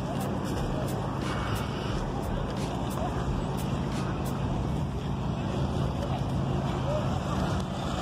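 A steady low engine hum, as of a motor vehicle idling, under outdoor noise, with faint distant voices.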